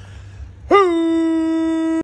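A man's voice comes in just under a second in with one long, clean, steady sung note, held without wavering to the end: a clear pitched tone, not a rough growl or scream.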